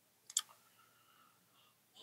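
A single short, sharp click about a third of a second in, against an otherwise very quiet background.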